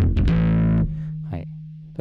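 Electric bass played through a Zoom MS-60B's BassDrive model (its copy of the SansAmp Bass Driver), with gain and blend at full and the treble cut, giving a distorted tone. The playing stops a little under a second in and the last low note rings on and fades away.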